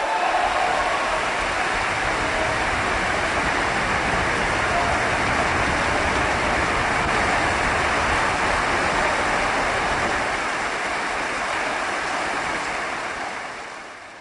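Audience applause breaking out, steady and dense, then fading away near the end.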